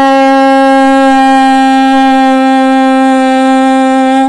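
A woman's voice holding a long, steady 'oo' vowel at one unchanging pitch, sung slightly nasal as a vocal warm-up exercise for the nasal resonator.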